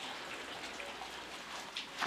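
Rain falling steadily: a soft, even hiss.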